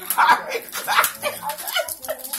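Cellophane gift wrap crinkling and tearing as a wrapped box is pulled at, with short high-pitched excited voices and laughs from people close by.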